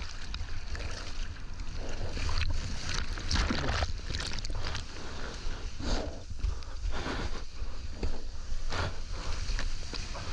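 Surfer's arms paddling a surfboard through the sea, each stroke a splash close by, about one a second, over a steady low rumble of water.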